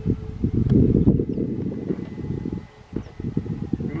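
Wind buffeting the microphone in uneven gusts, with a faint steady whine from a radio-controlled B-25 bomber model flying overhead.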